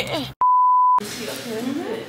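A single pure steady beep, about half a second long, with all other sound cut out around it: an edited-in censor bleep over a spoken word.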